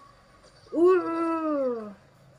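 One drawn-out vocal call, about a second long, that holds its pitch and then slides down at the end.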